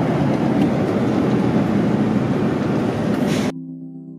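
Steady road and engine noise of a moving tour bus, heard from inside the coach. It cuts off abruptly about three and a half seconds in and soft synthesizer music takes over.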